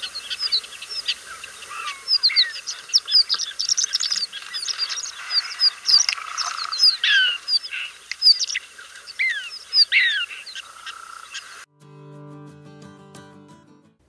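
Horned lark singing: a long series of fast, high notes, many of them quick downward slurs, run together in a jumble. The song stops a couple of seconds before the end, giving way to a steady low hum.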